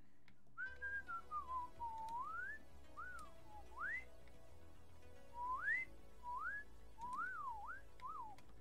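A person whistling a tune: a single clear note sliding up and down in short phrases, with brief pauses between them.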